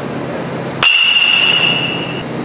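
A metal baseball bat hitting a ball once, a little under a second in: a sharp crack followed by a high, ringing ping that fades over about a second.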